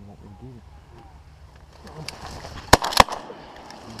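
Two loud shotgun shots about a third of a second apart, near the end, fired by two hunters almost together.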